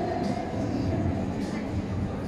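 Steady low rumble of a large indoor arena hall, with faint voices and music mixed in.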